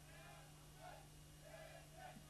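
Faint, short, high-pitched voice calls, about four of them, over a steady low electrical hum.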